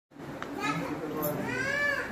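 People's voices talking, with one higher voice rising and falling in pitch in the second half.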